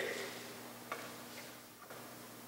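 Soft handling sounds at a pulpit in a quiet room: a brief rustle fading away at the start, then a few faint separate clicks, as of a Bible's pages being handled.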